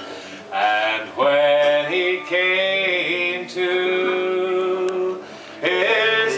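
A man singing a traditional ballad unaccompanied, holding long, slow notes that slide between pitches, with short breath pauses about half a second in and near the end.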